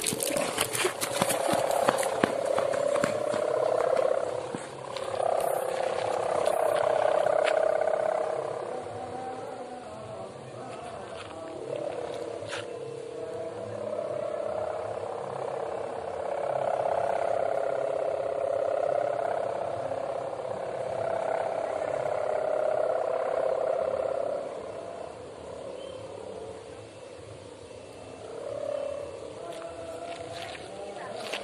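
Kite hummer (sendaren) on a 4-metre kite droning in the wind: a steady mid-pitched hum that swells and fades in long waves several seconds apart. Crackling noise in the first few seconds.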